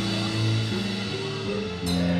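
Live rock band playing: electric guitars and bass guitar over a drum kit, with sustained bass notes changing about every half second.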